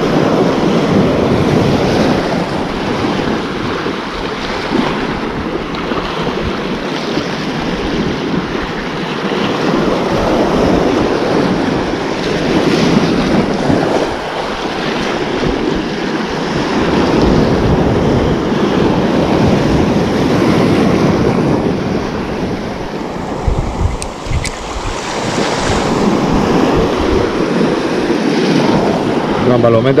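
Sea waves breaking and washing up the shore right around the microphone, the surf swelling and easing every several seconds, with wind buffeting the microphone.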